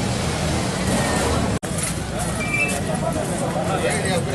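Several people talking at once over steady street traffic noise, with a brief dropout in the sound about one and a half seconds in.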